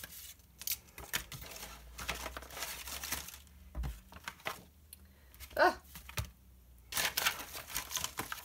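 Paper sheets of alphabet stickers rustling and crinkling as they are picked up, flipped and shuffled, with scattered light taps; the handling gets louder near the end.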